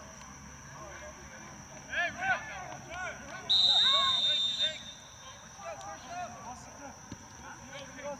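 A referee's whistle blown once, a single steady blast of about a second starting a little after three and a half seconds in, the loudest sound here. Players shout across the pitch just before it.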